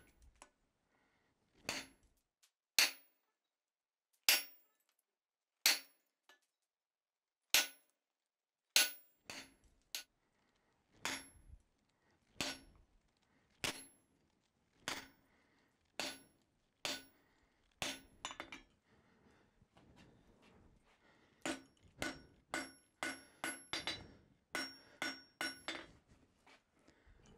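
Hand hammer striking red-hot steel on an anvil, each blow with a short metallic ring. The blows come about once a second, then quicken to a fast run in the last few seconds.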